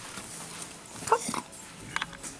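A dog making a couple of short, faint whimpers about a second in, with a small click near the end.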